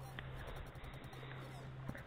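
Faint handling sounds of fishing pliers working a stuck hook out of a small rockfish: two faint clicks, one just after the start and one near the end, over a steady low hum.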